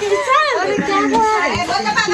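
Children laughing and shouting excitedly as they play, voices overlapping.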